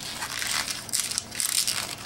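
Hands rubbing and twisting an inflated dark brown 160 latex twisting balloon to form a bubble. It makes a high, scratchy rubbing with no clear tone, a little stronger in the middle.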